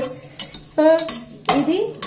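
Spatula stirring whole spices in the bottom of a pressure cooker, scraping and knocking against the pot with a few short, sharp clicks.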